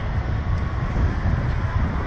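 Wind buffeting the microphone of a Slingshot ride capsule's on-board camera: a steady, flickering low rumble.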